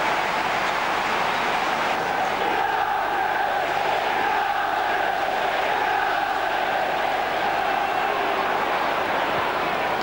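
Football stadium crowd chanting: a steady mass of singing voices with no break.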